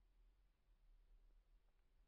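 Near silence: a pause between narrated lines, with only faint low hum and hiss.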